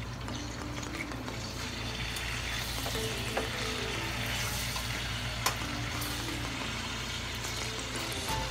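Pork ribs and skinless sausages sizzling as they fry in a pan, the sizzle a little louder after about two seconds, with two sharp clicks of a utensil against the pan midway. Background music plays underneath.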